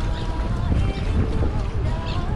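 Steady low rumble of wind on the microphone over choppy water lapping around a kayak.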